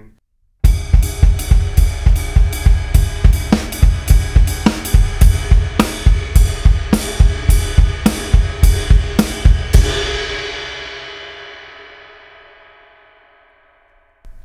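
Gretsch drum kit played with sticks in a 3/4 groove: kick, snare and cymbals, with the snare placed inside a dotted-eighth-note bass drum pattern to make a hemiola. The playing stops about ten seconds in and a cymbal rings on, fading away over about four seconds.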